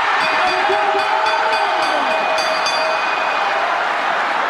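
A sustained horn-like tone, several pitches held together for about three seconds, over steady background noise.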